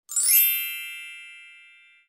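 A sparkling chime sound effect: a quick rising shimmer of bell-like tones that rings out and fades away over almost two seconds.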